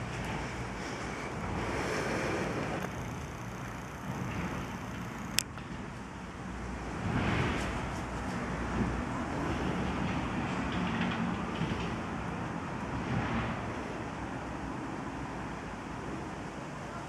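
Outdoor background noise: wind buffeting the microphone over a low rumble like distant traffic, swelling and easing, with one sharp click about five seconds in.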